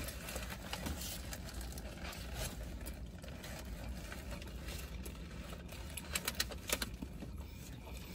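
Chewing a sandwich, with small scattered mouth clicks, over a steady low hum in a car cabin.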